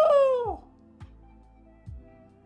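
Anime episode soundtrack: a high-pitched voice holds one long note that falls away and ends about half a second in, followed by soft background music.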